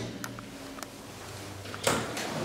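Schindler Smart 002 machine-room-less traction elevator setting off behind its closed landing doors: a faint low hum with a few light clicks. A single sharp thump comes near the end.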